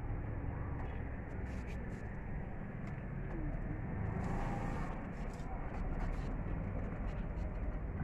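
Steady outdoor background noise with a low rumble, picked up by a phone microphone.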